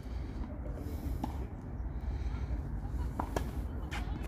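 A few sharp knocks of a tennis ball, once about a second in and several close together near the end, over a steady low rumble.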